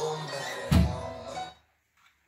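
Small portable AM/FM radio playing a broadcast with music, heard again once the aluminum toolbox lid is opened, with a thump about three-quarters of a second in. The radio sound cuts off about a second and a half in.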